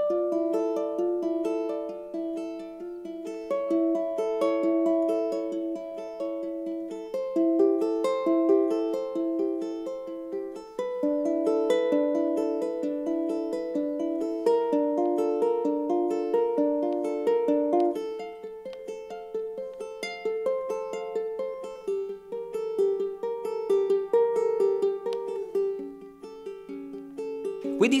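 Ukulele fingerpicked in flowing arpeggios, one chord shape moved along the neck so the chords change every few seconds.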